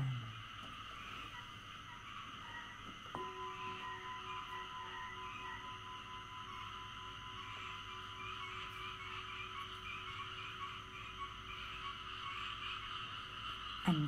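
A bell is struck once about three seconds in and then rings on with a long, steady tone, marking the start of the communal bowing and chanting. Behind it runs a steady chirping chorus.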